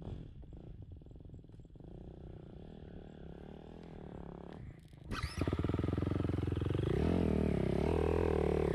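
Dirt bike engine, faint at first, then loud and close from about five seconds in, its pitch rising and falling as the rider accelerates and shifts.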